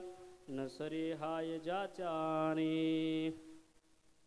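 A man's voice chanting a devotional invocation in a sung, melodic line into a microphone, ending on a long held note that stops about three and a half seconds in.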